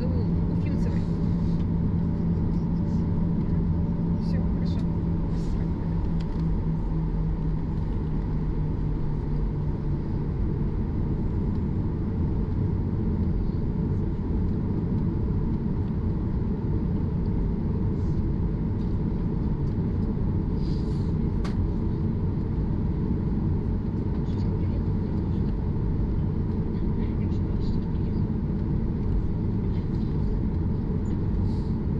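Cabin noise of a Boeing 737-8 MAX taxiing: a steady low rumble of the idling CFM LEAP-1B engines and the airframe rolling on the taxiway. A steady hum fades out about ten seconds in.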